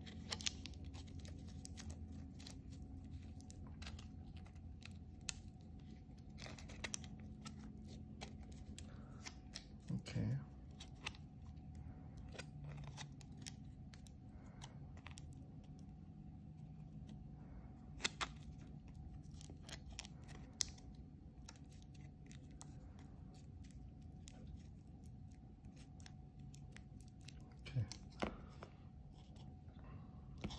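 Thin aluminium kitchen foil crinkling and crackling in small scattered clicks as it is crumpled and wrapped by hand around a USB cable, over a low steady hum.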